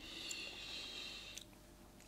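A soft breath out through the nose, lasting about a second and a half, with a faint click or two from the mouth, as a sip of whisky is held and tasted for its finish.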